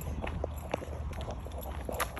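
Footsteps on a concrete sidewalk: a string of short, irregular taps, over a steady low rumble.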